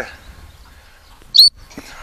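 A single short, sharp pip on a gundog training whistle, high-pitched and loud, about one and a half seconds in, with faint wind rumble underneath.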